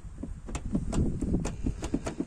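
Loose plastic tailgate trim panel on a Renault Mégane III being wobbled by hand, giving quick, irregular plastic knocks and clicks, about five or six a second. The panel sits loose on the tailgate.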